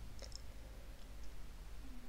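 Faint small clicks: a quick cluster about a quarter-second in and two lighter ones around a second in, over a low steady hum.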